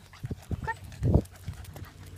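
A person in flip-flops and a dog walking on a pavement: irregular soft footfalls and knocks, with a louder thump a little past a second in.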